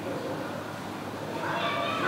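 Indistinct talking in the background, with a short high-pitched call starting about a second and a half in.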